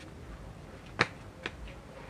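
Two sharp snaps about half a second apart, the first one loud and the second weaker, over a low background.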